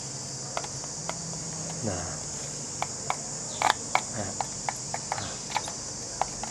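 Scattered small clicks and taps of metal tools and component leads on an amplifier circuit board while output transistors are being desoldered, with a louder cluster of clicks a little past the middle.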